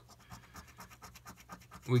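A coin scratching the coating off a paper scratch-off lottery ticket in rapid, short back-and-forth strokes, quiet and raspy.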